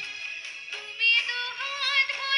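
A woman singing a Bengali song with instrumental accompaniment; about a second in she comes in on a held note sung with vibrato.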